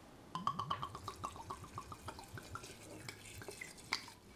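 Grain alcohol glugging out of a bottle neck into a glass jar of lemon peels: a quick run of gurgles, about eight a second, that thins out toward the end. A single light knock comes near the end.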